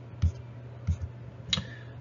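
Stylus striking a tablet surface while writing by hand: three sharp clicks about half a second apart, over a steady low hum.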